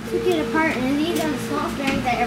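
Speech: a child talking, the words unclear, with a few faint clicks of parts being handled.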